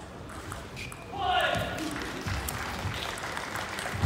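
Table tennis rally: the ball clicks sharply off bats and table. About a second in, a loud voice shouts, followed by a haze of crowd noise and some applause.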